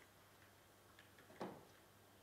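Near silence: quiet room tone with a few faint ticks, and one short soft sound a little after the middle.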